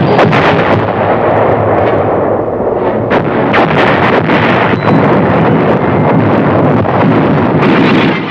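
Artillery fire and shell explosions: a loud, continuous battle din with repeated sharp blasts, several of them a second or so apart.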